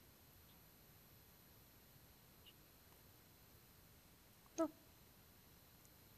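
Near silence: quiet room tone.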